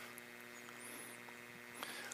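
Faint, steady electrical hum over low room tone.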